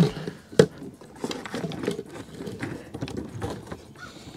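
Handling noise of wires being pushed back into a wall opening: a sharp click about half a second in, then soft rustling and small clicks.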